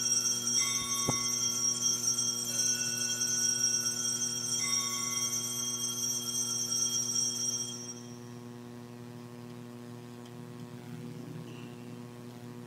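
Altar bells rung at the elevation of the chalice: several rings about two seconds apart, each ringing on and dying away by about eight seconds in. A steady electrical hum runs underneath.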